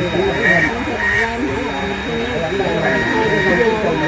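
Handheld electric rotary engraving tool cutting into a stone headstone to deepen the carved inscription letters, a steady high whine.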